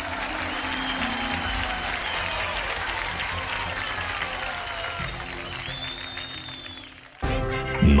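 Audience applauding over stage entrance music. The applause fades near the end, and a louder new piece of music cuts in abruptly about seven seconds in.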